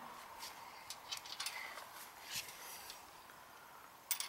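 Faint, scattered light clicks of a steel washer and nut being handled and threaded by hand onto a 5/16-inch carriage bolt.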